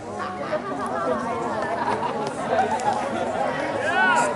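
Several people talking at once, their voices overlapping into crowd chatter.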